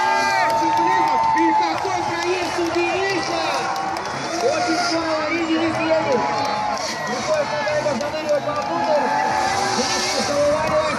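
Engines of two drift cars revving hard through a tandem drift, with a commentator's voice talking over them and crowd noise.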